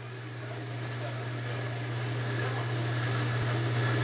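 A steady low machine hum fading in and growing louder, with a faint hiss above it.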